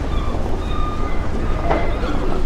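A bus pulling away: a low rumble with several steady high whining tones, and a short burst of noise near the end.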